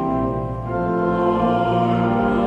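Pipe organ playing slow, held chords, moving to a new chord about half a second in.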